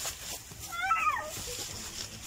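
A cat, likely a kitten, meowing once about a second in: a single short call that rises and then falls in pitch, over a faint rustle of dry straw.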